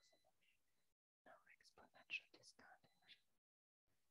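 Near silence, with a faint murmur of a voice during a pause in a talk.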